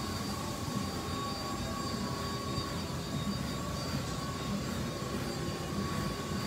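Steady mechanical hum of shop background noise, with a faint constant high whine running through it.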